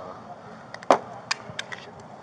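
Handling noise close to a body-worn camera: a handful of short sharp clicks and light knocks, the loudest about a second in.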